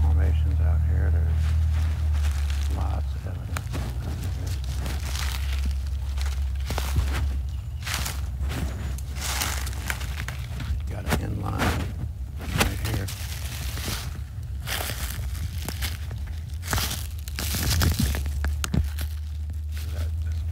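Footsteps crunching through dry leaf litter, an irregular run of crackles as a person walks through woods. A low rumble on the microphone is strong in the first few seconds and returns near the end.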